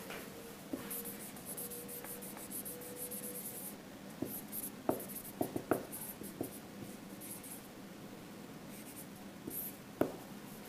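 Dry-erase marker squeaking and scratching across a whiteboard in short strokes, with a faint held squeak in the first few seconds. A handful of short sharp clicks cluster around the middle, between marker strokes.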